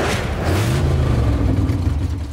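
Trailer sound-design hit: a sudden loud whoosh that sinks into a deep rumble, with a low tone that swells up and falls back.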